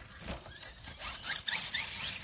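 Radio-controlled monster truck's motor giving a few short rising whines in quick succession as the throttle is blipped, after a soft bump of the truck bouncing on the grass.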